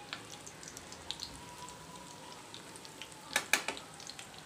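Chicken jaali kebabs with their egg coating shallow-frying in hot oil in a pan: a steady sizzle with scattered small pops and crackles. A few louder clicks come about three and a half seconds in.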